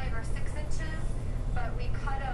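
Indistinct speech in short phrases over a steady low rumble.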